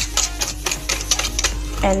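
Wire balloon whisk beating a thin liquid mix of milk, oil and sugar in a stainless steel bowl: a quick, even clatter of the wires striking the metal, about six strokes a second.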